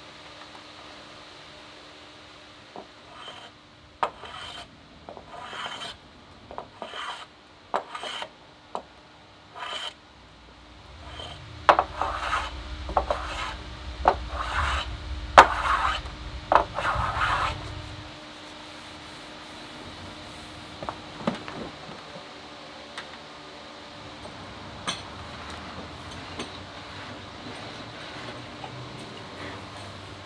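Oak being shaved by hand with an edge tool. There are short strokes about once a second, then a louder, quicker run of strokes about halfway through, and only faint scraping after that.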